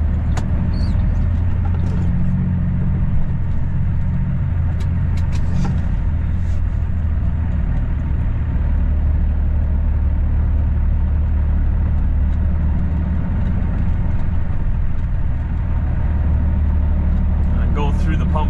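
Semi truck's diesel engine running steadily at low speed, heard from inside the cab as the truck rolls slowly into a truck stop lot. A few faint clicks in the first six seconds.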